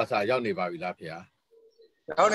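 A man's voice speaking a few short phrases over a video-call connection, stopping after about a second.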